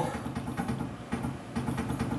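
Steady low mechanical hum from a Tormach PCNC 1100 CNC mill.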